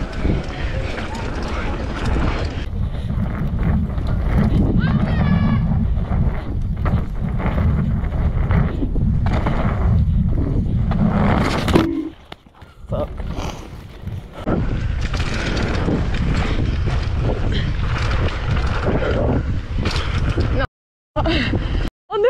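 Wind rushing over a mountain-bike action camera and knobbly tyres rolling fast over a dirt trail, a loud steady rumble. It drops away for a moment around the middle and cuts out briefly shortly before the end.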